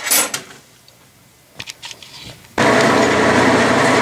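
A few light clicks, then a metal lathe suddenly starts sounding about two and a half seconds in, running steadily with a hum and gear whine while it turns down a soft lead bar with a carbide tool.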